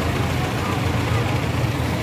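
Street traffic: a steady low engine hum from idling vehicles close by, with indistinct voices in the background.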